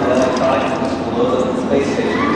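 A man talking, his words not picked up by the transcript.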